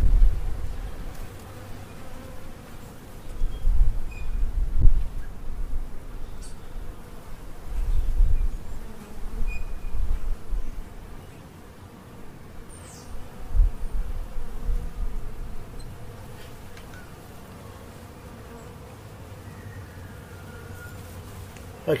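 Honeybees humming around a hive entrance as oxalic acid vapour seeps out, with low rumbles of wind on the microphone every few seconds.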